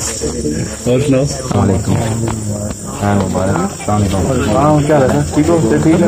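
Crickets chirping in a steady high-pitched chorus, heard under men's voices as they exchange greetings.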